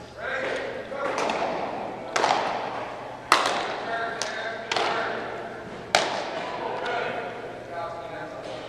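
Baseballs smacking into leather gloves as they are relayed down the line: about half a dozen sharp pops, each followed by echo in a large indoor hall.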